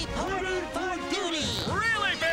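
High-pitched cartoon character voices crying out in wordless exclamations that swoop up and down in pitch, over music.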